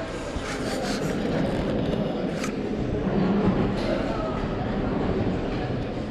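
Indistinct background chatter over a steady low rushing noise, with a light clink about two and a half seconds in.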